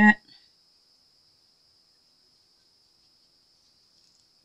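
A spoken word trails off at the very start, then near quiet with only a faint steady high-pitched whine in the background. The sprinkling of the flakes makes no sound that can be heard.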